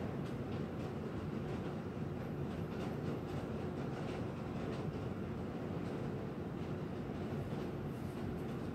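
Steady low background hum and rumble with a faint constant tone, and faint light ticks and rustles as gloved hands handle small plastic parts.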